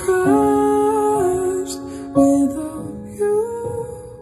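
Recorded music played back loudly through large Augspurger studio monitors: a slow passage of long held notes that change pitch every second or so, with reverb tails between them.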